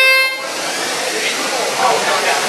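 VEX field-control match-start buzzer sounding a steady horn tone that cuts off about half a second in, followed by a steady rushing noise from the running robots and the crowd.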